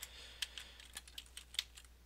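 Computer keyboard being typed on: about seven or eight faint, irregularly spaced keystrokes as a short command is entered.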